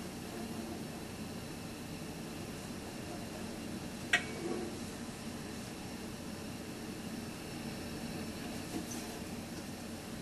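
Handling of a wooden monochord box as it is turned over: a steady low hiss with one sharp knock about four seconds in and a fainter tap near the end.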